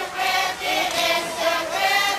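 A group of women singing together in chorus, a chant-like traditional dance song with several voices blended into one line.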